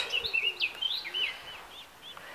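A small songbird singing a quick run of short, high notes that glide up and down, fading out near the end.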